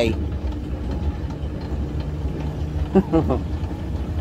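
A steady low rumble and hum of building machinery, with a brief voice about three seconds in.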